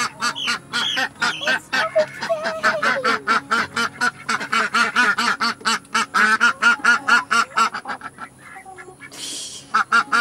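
Ducks quacking in a fast, unbroken run of short calls, several a second, thinning out near the end. A brief rustling hiss comes about nine seconds in.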